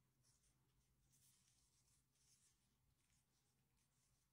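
Near silence: faint scattered rustles over a low steady hum.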